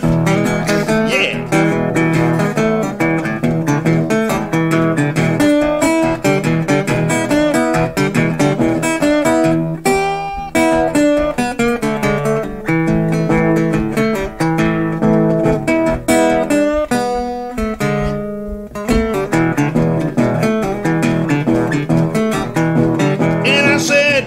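Piedmont blues played on a solo acoustic guitar: an instrumental break of picked notes over a steady, repeated bass note.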